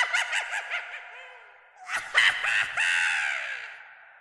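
Harsh, crow-like cawing as a spooky sound effect, in two bursts of repeated calls: the first fades out after about a second and a half, the second starts about two seconds in and fades away near the end.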